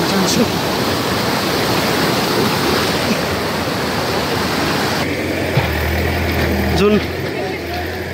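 A swollen, muddy mountain river rushing over boulders in a steady roar. About five seconds in it drops away and a low steady hum takes over, with faint voices.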